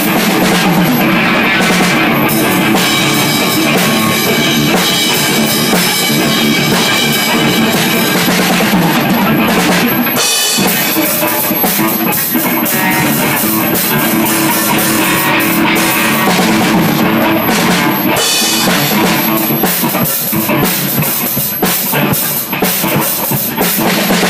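A rock band playing loud in a rehearsal room: electric guitars over a drum kit with bass drum. There is a short break in the playing about ten seconds in, then the band carries on.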